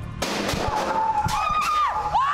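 A sudden loud bang, then a high, held scream in fright.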